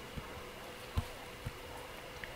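Faint room tone: a steady hiss with a faint hum, broken by three soft low thumps.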